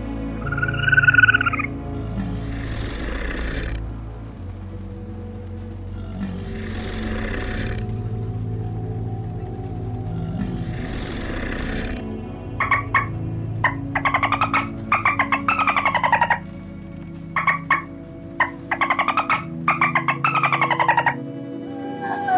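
Soft background music with animal calls laid over it: a short pitched chirp about a second in, three hissing bursts about four seconds apart, then from about halfway, runs of rapid pulsed trilling calls that fall in pitch.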